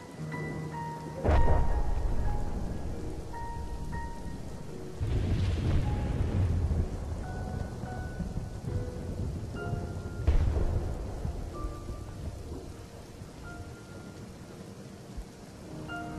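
Soundtrack of sparse, slow music notes over a steady rain-like hiss, broken by three deep rolling rumbles: one about a second in, one about five seconds in and one about ten seconds in.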